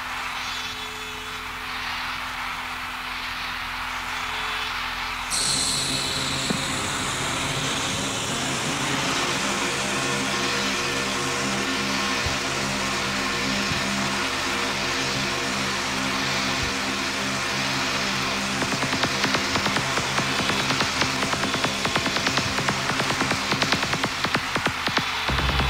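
Early-1990s rave/hardcore dance track in a beatless breakdown: a swelling wash of noise, a sudden whooshing sweep about five seconds in, then sustained synth chords, with fast percussion ticking back in over the last few seconds.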